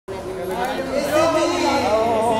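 Several people talking at once, their voices overlapping in a hall.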